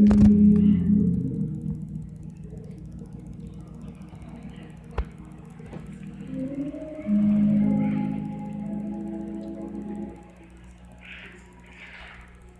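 Organ music holding long sustained chords. It is loudest at the start, and a new chord swells in about seven seconds in and drops away near ten seconds. A single sharp click comes about five seconds in.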